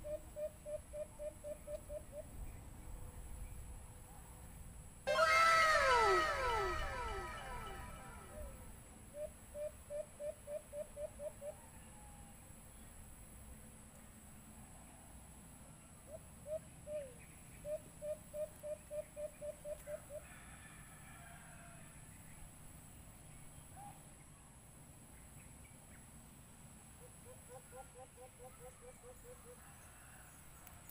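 White-eared brown dove calls: quick runs of short, low hooting notes, about five a second, repeated several times. A much louder burst of falling, overtone-rich calls comes about five seconds in.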